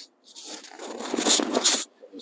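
Cloth towel rustling and rubbing close to the microphone as it is wrapped around a person's head, a scratchy scraping that builds and peaks twice before stopping.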